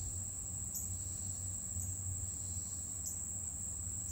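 Steady, high-pitched insect chorus: one unbroken shrill trill, with a few short rising chirps over it.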